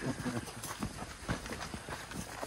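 Footsteps of several people walking on damp sandy soil, in a mix of flip-flops, rubber Wellington boots and trainers: an irregular run of soft steps.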